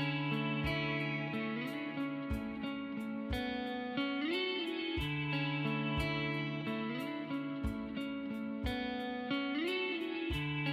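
Instrumental background music led by guitar, with notes that slide up in pitch now and then over a steady ticking beat.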